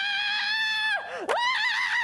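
A woman screaming. A high, steadily held scream breaks off with a falling slide about a second in, and a second high scream follows at once.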